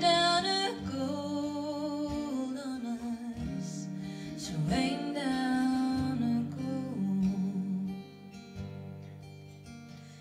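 Live folk song: a strummed acoustic guitar under long, held female sung notes, thinning to softer guitar over the last two seconds.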